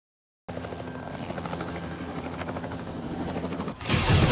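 A steady, rapidly pulsing mechanical drone, like a helicopter's rotor, starting about half a second in and dropping away just before the end.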